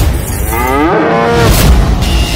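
A cow's moo, about a second long, rising in pitch and then holding. It comes between sudden swooshing hits at the start and near the end.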